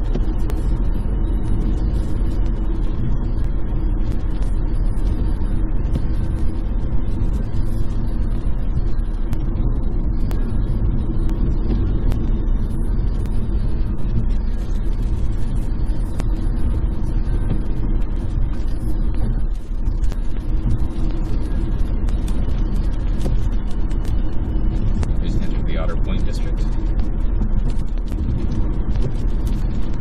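Steady road and tyre noise inside the cabin of a 2011 Chevrolet Volt driving on battery power, with the climate-control heater fan running.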